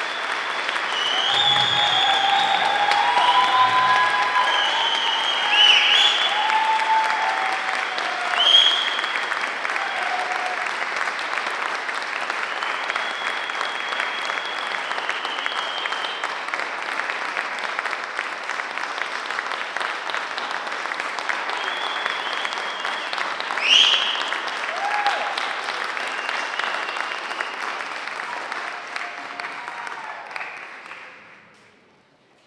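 Audience applauding, building up over the first few seconds and dying away at the end, with cheers and whoops rising above the clapping several times.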